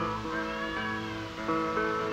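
Live band music on a soundboard recording: electric guitar notes bending up and down in pitch over sustained chords.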